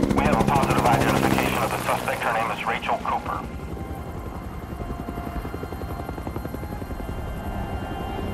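Helicopter hovering, the fast chop of its rotor loud for the first three seconds or so, then dropping to a quieter, continuing beat.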